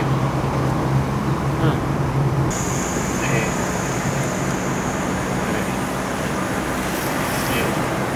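Steady road and engine noise heard from inside a moving car's cabin, with a low steady hum underneath. A faint high-pitched whine comes in about two and a half seconds in.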